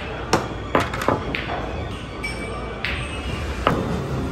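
Pool balls clacking: about six sharp clicks, each with a short ring, spread unevenly, the hardest near the end, over background music in a large hall.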